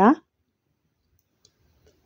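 Near silence after a brief spoken word, broken only by one faint click about one and a half seconds in.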